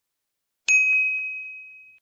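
A single bell-like ding starts sharply about two-thirds of a second in, one high clear tone that rings out and fades away over about a second and a half.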